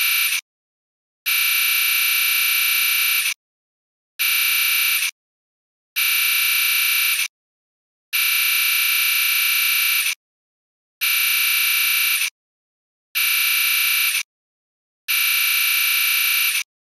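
Harsh electronic buzz tone from a Scratch typewriter-text project, sounding in repeated bursts of about one to two seconds separated by short silences, each burst as loud as the last. It plays while a line of text types out into the speech bubble and stops between lines.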